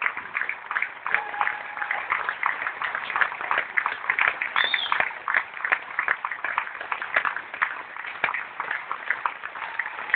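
Audience applauding with many hands clapping steadily, with a brief high-pitched note just before halfway through.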